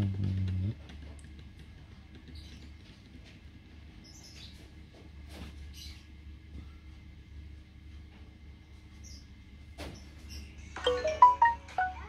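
GMC 897H portable speaker sounding a brief low tone right at the start. Near the end it plays a short, loud run of several electronic notes, the speaker's prompt as it is made ready for Bluetooth pairing. Faint high chirps come now and then in the quiet between.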